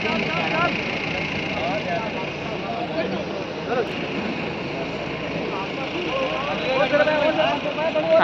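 Indistinct voices of people talking in the background over steady outdoor noise.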